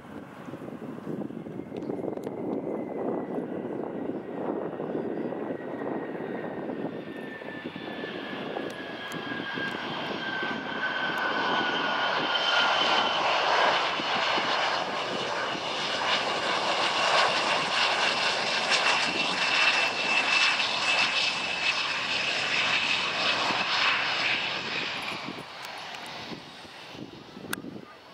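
Bombardier CRJ-200's two rear-mounted General Electric CF34 turbofans during the landing rollout: a steady jet rush with a whine that slides slowly down in pitch. It grows louder as the jet rolls past, from about ten seconds in, and fades near the end.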